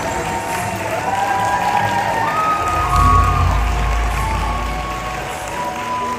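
An audience applauding and cheering over background music.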